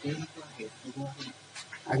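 Quiet, broken vocal sounds from a person's voice, short syllables and murmurs between louder speech.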